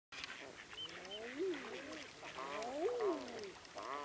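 Several birds calling at once: overlapping rising-and-falling calls, loudest about halfway through, with a few short high calls above them.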